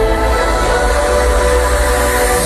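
Festival sound system playing a loud, sustained electronic chord of several held tones over a deep bass drone.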